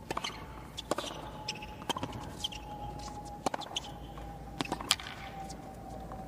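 Tennis rally on a hard court: a ball struck by rackets and bouncing, a sharp knock about every second, over a faint steady tone.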